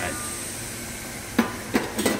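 Steady hiss from a Tuttnauer steam autoclave running under pressure, with two sharp clicks in the second half.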